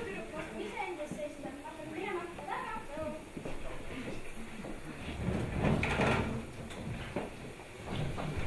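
Voices speaking in a hall, then a louder, noisier stretch of mixed sound with knocks about five to seven seconds in.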